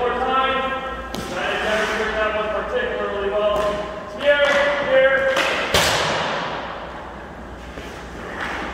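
Hockey stick striking a puck on ice in a reverberant rink: a sharp knock about a second in, then a louder crack a little before six seconds whose echo rings and fades.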